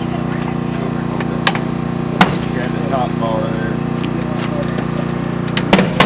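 Engine of a hydraulic rescue tool's power unit running steadily, with a few sharp metallic clicks and knocks from the tool working on a car door: one about one and a half seconds in, a louder one just after two seconds, and two close together near the end.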